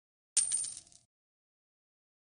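A short, bright chime sound effect from the Bijian video editor's end card, starting suddenly about a third of a second in on a high steady ringing tone and fading out within about half a second.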